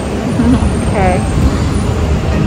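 Steady low rumble of city street traffic, with two short voice sounds from a woman about half a second and a second in.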